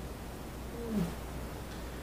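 Quiet room with a steady low hum; about a second in, one short, faint vocal sound falling in pitch.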